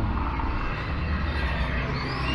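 Steady low rumble of street noise, with no distinct event standing out.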